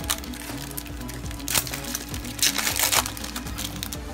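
A foil Yu-Gi-Oh booster pack being torn open and crinkled by hand, in two short bursts about a second and a half and two and a half seconds in, over steady background music.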